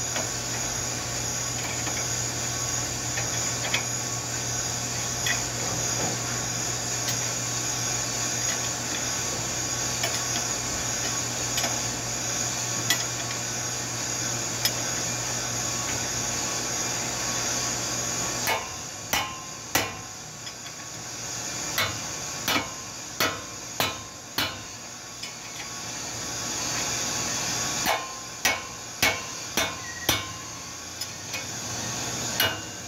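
Hammer blows on the metal of a car's front brake assembly: a run of sharp single strikes, about a dozen over six seconds in the second half, then a few more near the end. A steady machine hum runs underneath until the blows begin.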